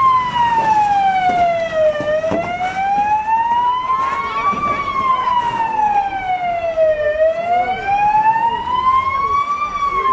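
Emergency vehicle siren wailing loudly in a slow rise and fall, each sweep down and back up taking about five seconds, about two full cycles.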